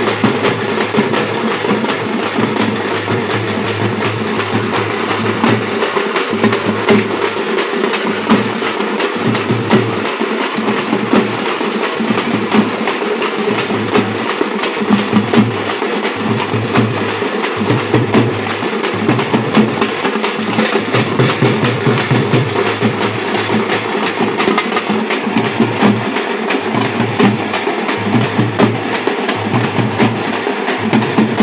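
Several parai (thappu) frame drums beaten together with sticks in a thappattam drumming rhythm. The strokes are dense and unbroken.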